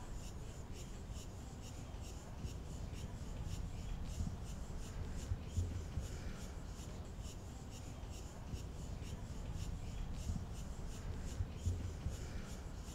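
Faint outdoor ambience: a steady low rumble with a quick, even ticking high up, about three ticks a second.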